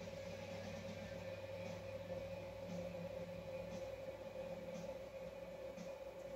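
Quiet room tone: a faint steady hum with a few faint, soft ticks.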